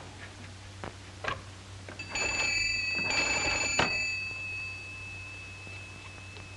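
Hand-cranked magneto wall telephone's bell ringing in two short bursts as the crank is turned to call the operator, the ring dying away afterwards. A few soft knocks come before it.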